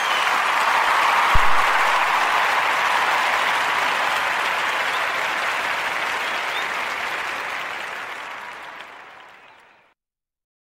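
Crowd applause, most likely a canned applause sound effect, that swells in, holds steady, then fades away and stops near the end. A brief low thump comes about a second and a half in.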